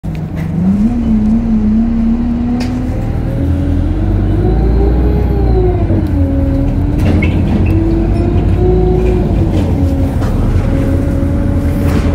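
Diesel engine of an Alexander Dennis Enviro200 single-deck bus under way. Its pitch climbs about a second in, then rises and falls several times as it speeds up and eases off. Occasional sharp clicks and rattles sound over it.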